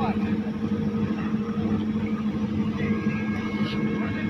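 Engines of single-seater race cars idling together on the grid, a steady low hum, with people's voices in the background.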